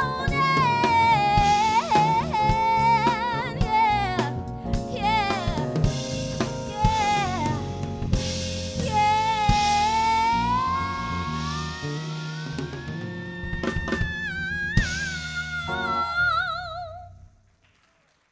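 Female soul/R&B vocalist singing over a live band with drum kit: long held notes, one sliding slowly upward, then a cluster of drum hits and cymbal crashes, and a final held note with vibrato that fades away near the end as the song finishes.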